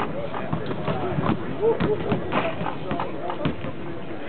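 Basketballs bouncing on a hardwood court, a scatter of sharp thuds, over several people talking in the background.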